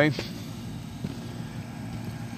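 Air conditioner unit running with a steady low hum.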